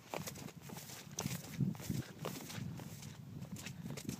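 Footsteps through wet, matted dead grass: a run of soft, irregular steps.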